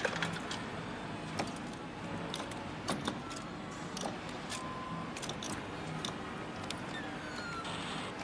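Claw machine being played: a run of sharp clicks and rattles from its joystick and buttons over a steady machine hum, with a few short electronic beeps and a falling beep near the end.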